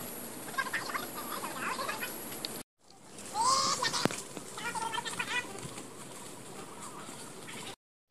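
Birds calling: a few short clucking, chirping calls over a faint forest background, with a single sharp click among them. The sound drops out briefly twice.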